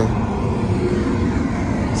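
Steady noise of road traffic going by, tyre and engine hum with no clear rise or fall.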